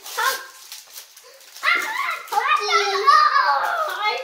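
A young child's high-pitched, excited voice, a drawn-out wordless call or squeal lasting the second half, with brief crinkles of foil blind-bag wrappers in the first second.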